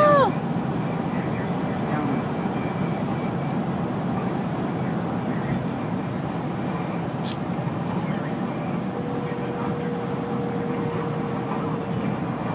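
Steady road and engine noise heard inside a moving car's cabin. A short tone that rises and then falls in pitch sounds at the very start.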